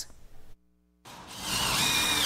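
After a brief silence, a cordless power drill starts up about halfway through and runs steadily with a whine, driving a screw into plywood sheeting.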